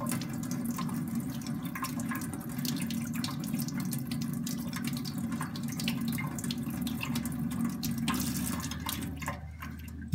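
Tap water running in a thin stream from a faucet onto a wet whetstone and splashing into a stainless steel sink, with scattered drips. The flow stops near the end.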